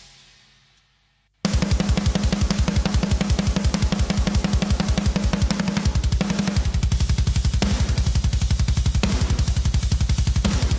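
Mixed drum track of a deathcore song played back: a snare hit's reverb tail fades away, then about a second and a half in the full kit starts, with very fast kick drum strokes under snare and cymbals. The snare carries a short plate reverb lengthened by compression.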